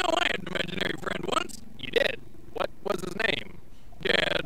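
Voices speaking from a film soundtrack, with a low steady hum under the voices for the first second or two.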